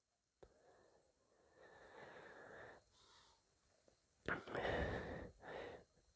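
Mostly near silence, with faint breath sounds close to the microphone: a soft breath about two seconds in and a longer, louder exhale starting a little after four seconds in.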